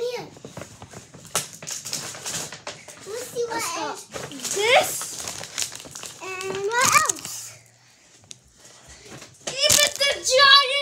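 Plastic packaging crinkling and rustling as it is pulled out of a paper gift bag, with a child's voice rising into squeals about four and seven seconds in.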